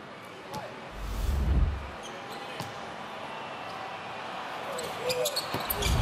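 Basketball bouncing on a hardwood court, with a louder low thump about a second in and sharper court clicks near the end, over a low arena background.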